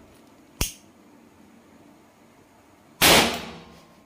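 Homemade lighter gun firing its charge of crushed match-head powder: a sharp click, then about two and a half seconds later a loud bang whose noise fades over about a second.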